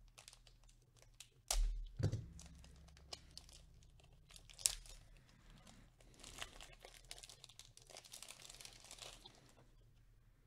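Plastic being handled around a PSA-graded card slab: scattered clicks, a louder knock about a second and a half in, and crinkling from about six to nine seconds in.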